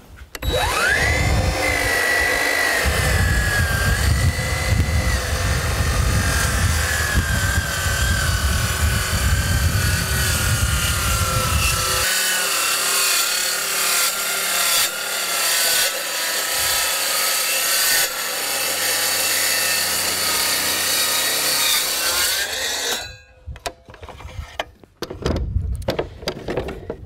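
DeWalt track saw spinning up and cutting a 45-degree bevel through sheet goods, with a steady motor whine that sags slightly in pitch under load during the cut. The motor cuts off near the end.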